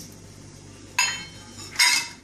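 Two clinks of small steel and glass bowls knocking against each other or a steel pot as they are handled, about a second in and again near the end, the second louder, each with a brief ringing tone.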